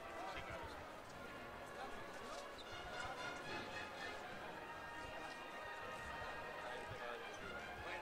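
Street crowd murmuring and talking, many voices overlapping at a low level.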